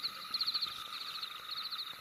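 Faint, high-pitched insect-like chirping in short rapid trains that repeat about every half second, over a faint steady tone: a night-time ambience bed.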